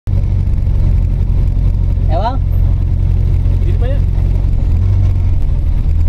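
Van engine idling inside the cabin, a loud, steady low rumble, with two short vocal sounds about two and four seconds in.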